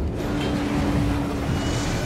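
Low, steady rumble with a single held tone over it through the middle, and a hiss swelling up near the end.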